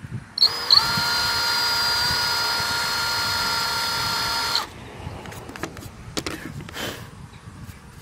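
DeWalt 18V cordless drill running steadily for about four seconds, a twist bit cutting a shallow countersink into a fibreglass panel. It then stops, followed by light clicks and knocks of handling.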